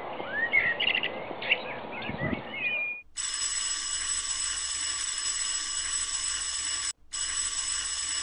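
Birds chirping over outdoor ambience for about three seconds. Then an abrupt switch to an electric school bell ringing steadily, with a short break about a second before the end.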